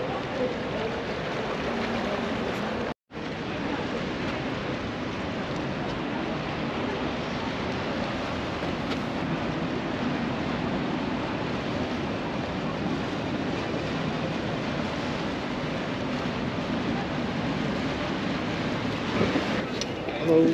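Steady outdoor noise of wind on the microphone and canal water, with tour boats moving on the canal; the sound cuts out for an instant about three seconds in.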